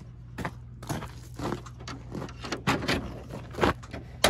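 Irregular clicks and light metallic knocks from a hand tool being worked at a 1993 Jeep Cherokee XJ's hood release, tugging at the release cable because the release handle won't open the hood.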